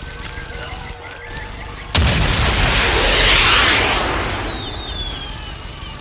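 Mortar shell explosion sound effect: a sudden loud blast about two seconds in, which swells and then rumbles away over several seconds, over a low background rumble. Faint falling whistles are heard as it dies down.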